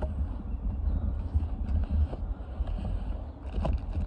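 Wind buffeting the microphone: a low rumble that rises and falls unevenly, with a few light knocks near the end.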